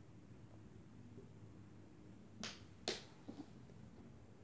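Two sharp clicks about half a second apart, then a few faint taps, as a sauce bottle and a spoon are handled over ceramic plates on a table.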